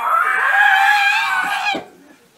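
A person screaming one long, high-pitched 'Ahh!', held on nearly one pitch for about a second and a half and then cut off sharply.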